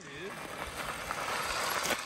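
Tyres of an electric bike rolling over gravel, a steady hiss that grows louder as the bike comes closer.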